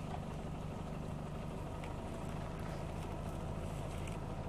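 An engine idling steadily, a low even hum with no change in speed.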